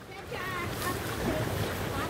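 Stream water rushing through shallow rapids: a steady rush that grows louder about half a second in.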